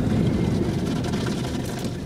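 Automatic car wash machinery and water working over the car, heard from inside the cabin: a steady, dense rumbling wash of noise that slowly grows quieter.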